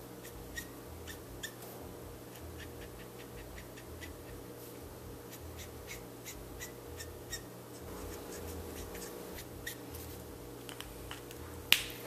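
Copic Sketch marker nib working on paper in short strokes and dabs, heard as faint scratchy ticks several times a second over a steady low hum. Near the end comes a single sharp click.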